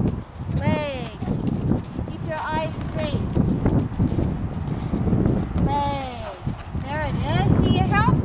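Hoofbeats of a horse cantering on sand footing.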